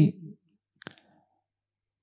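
A man's spoken phrase trails off, and about a second in there is a single faint, short click.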